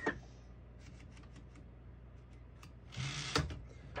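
1954 Underwood Universal portable typewriter: a few scattered keystrokes, then a brief, louder sliding rasp from the machine about three seconds in.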